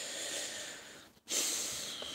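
A man breathing heavily through his nose close to the microphone: two long breaths, the second starting a little over a second in and slowly fading.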